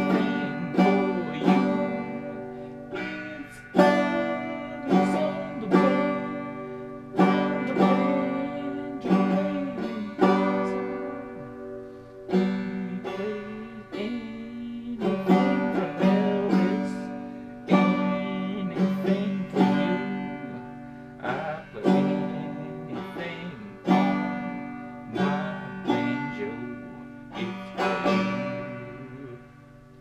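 Banjo strummed in chords, each strum ringing and dying away, at about one to two strums a second; the playing thins out and fades near the end.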